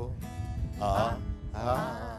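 Acoustic guitar accompanying a man and a woman singing a song together, with two sung phrases, one about a second in and one near the end.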